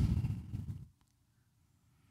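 Low background noise with no clear source, which cuts off abruptly a little under a second in; after that, silence.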